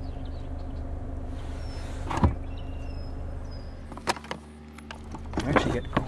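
Cargo floor board of a Mazda CX-30 boot being handled and lowered over the spare tire well: one sharp knock about two seconds in, then two light clicks about four seconds in, over a steady low hum.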